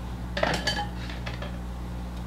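Plastic whiteboard markers clinking against the board's marker tray as one is handled, a short cluster of sharp clicks about half a second in, over a steady low hum.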